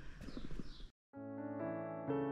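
Footsteps on the stone floor of a tunnel for about the first second. Then a brief gap of silence, and solo piano music begins.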